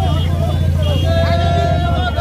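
Marchers in a street procession shouting slogans, with one long held call in the middle, over a steady low rumble.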